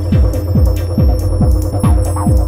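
Electronic acid techno played live on hardware synthesizers and a drum machine: a kick drum about twice a second with hi-hats over a held synth drone. Short, bright synth notes start coming in near the end.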